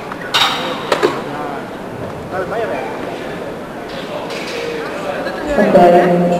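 Spectators' voices and chatter echoing in a large hall, with two short sharp sounds about half a second and a second in, and one louder, held voice near the end.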